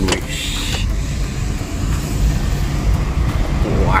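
A car driving along a road, heard from inside the cabin: a steady low rumble of engine and tyres.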